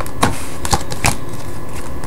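Playing cards being dealt by hand one at a time onto a pile on a table. There are three sharp snaps about half a second apart, over a steady low hum.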